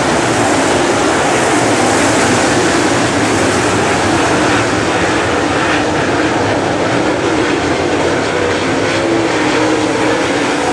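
Several dirt Super Late Model race cars racing around a dirt oval, their V8 engines overlapping in a loud, steady roar.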